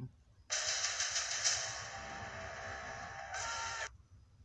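Film trailer soundtrack: a dense rushing noise with rapid fine crackle and a few faint tones underneath, starting about half a second in and cutting off suddenly just before the end.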